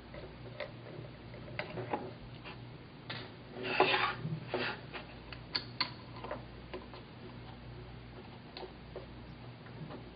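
A small screwdriver works the screws of a laptop hard drive's metal mounting bracket, making scattered light clicks and ticks of metal on metal. There is a louder clatter about four seconds in, over a faint steady hum.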